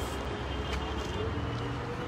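Steady rumble of street traffic, with a faint continuous engine hum.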